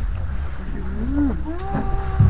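A woman's drawn-out, awed 'wooow' starts about halfway through and is held. Under it is a low steady rumble inside the gondola cabin.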